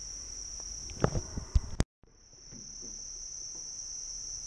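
Steady, high-pitched drone of a chorus of insects, with a few light knocks about a second in. The drone cuts out for a moment near the middle and fades back in.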